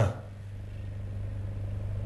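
A pause in a man's speech with only a steady low hum underneath.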